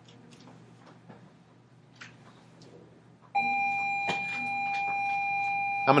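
A steady electronic beep tone starts suddenly about three seconds in and holds one pitch for about three seconds. Before it there are only faint scattered ticks and rustles.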